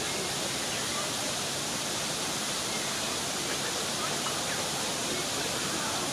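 Steady rush of a small waterfall: falling water splashing onto rocks.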